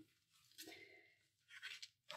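Faint rustle of paper pages being turned by hand in a handmade junk journal, twice: about half a second in and again about a second and a half in.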